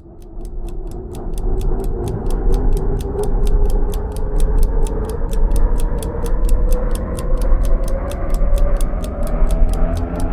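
Quiz countdown-timer music: clock-like ticking about four times a second over a low drone that swells in during the first couple of seconds and slowly rises in pitch.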